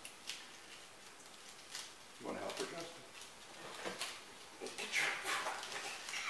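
Quiet room with faint, indistinct voices, briefly about two seconds in and again near the end, and a few soft handling clicks.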